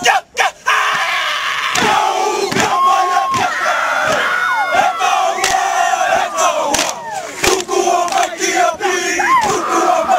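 A football team performing a haka: many young men's voices shouting the chant together, with repeated sharp slaps of hands on bodies.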